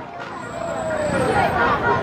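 A motorcycle passes close by, its engine note falling as it goes past.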